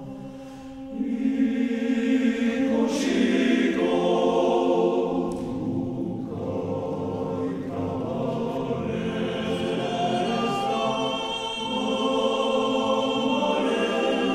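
Basque male choir singing in long, held chords, soft at first and swelling about a second in, easing back in the middle and swelling again near the end.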